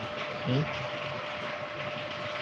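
A steady background hiss with a faint steady tone in it, under one short spoken word.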